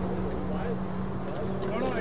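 Voices of players and onlookers talking in the background over a steady low hum.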